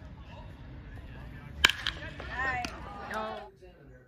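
Baseball bat striking the ball with one sharp crack about one and a half seconds in, followed by spectators shouting and cheering.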